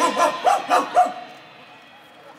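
Cartoon-dog barking over the show's sound system: about four short, yelping barks in the first second as the music stops, followed by a lull.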